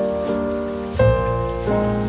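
Calm jazz-blues instrumental music: sustained chords held over a bass line, with a new chord struck about a second in.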